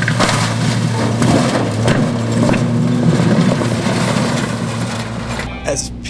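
Pickup truck engine running as the truck pushes through tall weeds and brush, with a steady low hum under a dense crunching, swishing noise of vegetation against the truck. It stops about five seconds in and a man's speech follows.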